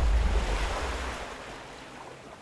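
A low, wind-like rumble with a hiss, fading away over about a second and a half.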